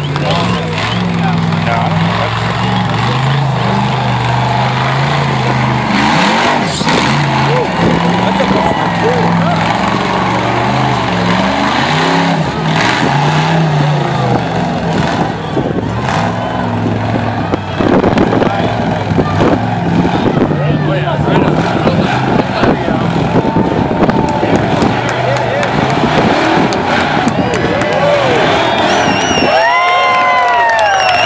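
Off-road race car's engine revving up and down in steps as it labours on a boulder climb, with spectators talking over it. Near the end there are whoops from the crowd.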